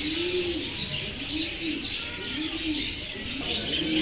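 Caged doves cooing, a low rising-and-falling coo repeated roughly once a second, with small birds chirping in the background.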